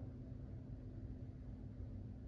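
Quiet room tone: a faint steady low hum with no distinct sounds.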